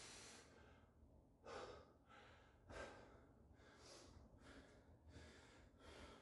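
A man breathing hard while flexing in bodybuilding poses: a run of short, faint breaths, about one a second, with two louder exhales in the first three seconds.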